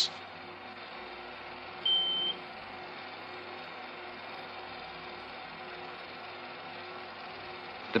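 A single short, high electronic beep about two seconds in, over a faint steady hiss and low hum.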